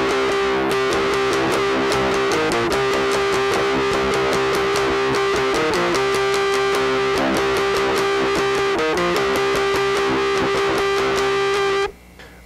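Electric guitar tuned to C standard, played through a wah pedal parked in one position as a fixed filter, giving a squawky mid-range tone. Rapid strummed chords ring over a sustained high note, with a few brief breaks, and stop suddenly just before the end.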